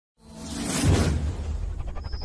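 Logo-intro sound effect: a whoosh that swells up out of silence, peaks about a second in and fades, over a deep low drone of intro music.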